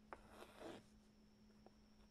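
Faint sounds of hand embroidery: a light tick, then a short soft swish about half a second in as the thread is drawn through the cloth stretched in the embroidery hoop, and another tiny tick near the end.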